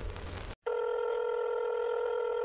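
A steady electronic telephone ring tone, one held pitch, starts about half a second in after a brief break, following the end of a louder, noisy sound.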